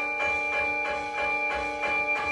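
Keyboard percussion notes struck with mallets in a steady run of about four a second, over a recorded backing track of held tones and soft low beats.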